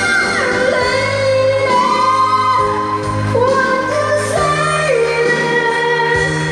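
Live singing into a microphone over backing music played through a PA, with long held notes over a steady bass line.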